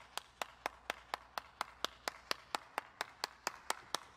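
One person clapping hands in a steady, even rhythm of about four claps a second.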